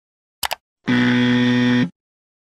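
Animation sound effects: a quick double mouse click, then a loud, steady electronic buzzer lasting about a second that cuts off abruptly.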